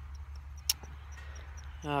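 Steady low rumble, with a faint high chirp repeating about four times a second and a single sharp click about a third of the way in; a man says "oh" just before the end.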